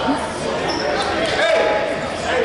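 Indistinct voices talking in a large gymnasium, echoing off the hall, with a few faint knocks.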